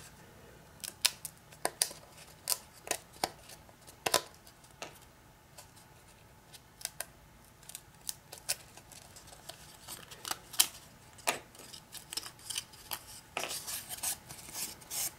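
Pre-stamped pieces being pressed out of a thin pressed-wood board by hand: irregular sharp snaps and clicks as pieces break free, coming faster near the end.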